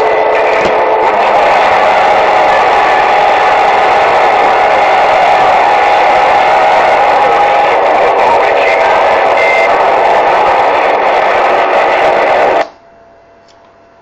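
CB radio receiver playing loud static through its speaker, a steady rushing hiss with faint steady tones in it, after the operator unkeys. It cuts off abruptly about a second before the end, leaving only a faint background.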